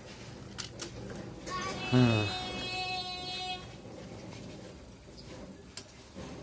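A plastic filter cartridge being worked out of its sawn-open plastic housing: a few light handling clicks, then a squeak lasting about a second and a half as plastic rubs on plastic.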